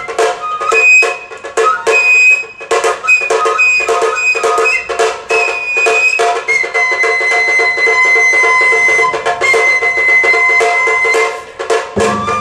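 Sato kagura shrine music: a high transverse flute playing long held notes and short phrases over quick, steady strokes of the drums.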